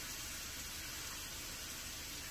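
A pan of coconut-milk and mango sauce simmering on the stove, a steady low hiss with no distinct pops or knocks.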